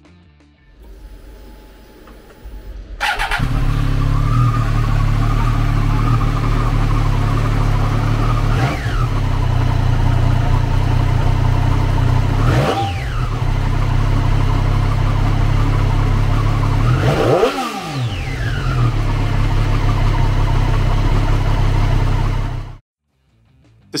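The 765cc three-cylinder engine of a 2018 Triumph Street Triple 765 RS, fitted with an Arrow slip-on muffler. It starts about three seconds in and idles steadily, takes three short throttle blips that rise and fall quickly, and is switched off abruptly near the end.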